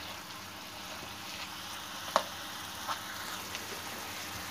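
Minced chicken sizzling softly on a low flame in a non-stick frying pan, cooking in the water it has released, while a spatula stirs it; a few light clicks of the spatula on the pan, the sharpest about two seconds in.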